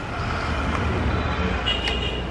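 Steady low rumble of road traffic, with a short click near the end.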